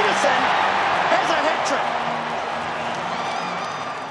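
Stadium crowd cheering loudly, the noise slowly dying away over the last couple of seconds.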